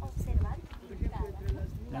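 Voices of people talking in the background, over a low, steady rumble on the microphone.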